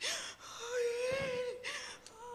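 A woman's voice: a sharp gasping breath, then a long high wailing moan, then another gasp near the end.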